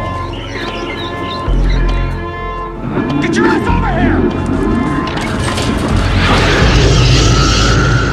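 Dark trailer score of sustained drone chords with deep booming hits. A man's shouting voice comes in about three seconds in, and a loud rushing whoosh of flamethrower fire builds near the end.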